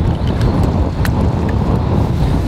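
Wind buffeting the microphone as a loud, uneven low rumble, with a faint click about a second in.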